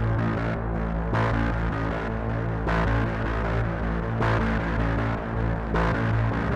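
Electronic music with a low, droning bass and a brighter pulse about every one and a half seconds.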